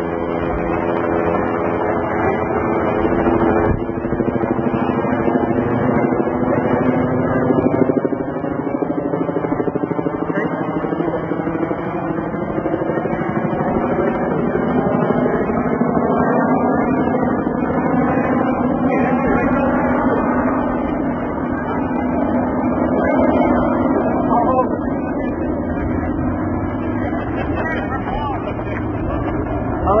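Loud, steady mechanical drone with many pitch lines that sink a little over the first few seconds, then wander slowly up and down, with no break. A brief shout comes near the end.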